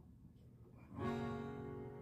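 Acoustic guitar: a single chord strummed about a second in, left to ring and slowly fade.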